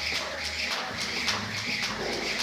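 Jump rope doing double-unders: the rope whips and ticks against the floor in a fast, even rhythm of about four strikes a second.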